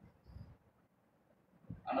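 A near-quiet pause in a man's speech, with one brief faint low sound about a third of a second in. His voice resumes near the end.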